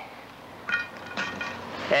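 Hot charcoal coals clinking against each other and the metal tongs as they are picked up and set on a cast-iron Dutch oven lid: a few light, ringing clinks in the middle.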